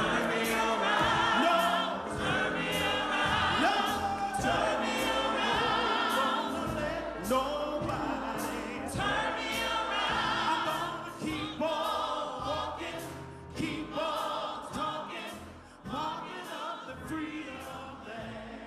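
A woman's solo voice sings a gospel song into a microphone with strong vibrato, backed by a choir, with hand claps. It grows quieter over the last few seconds.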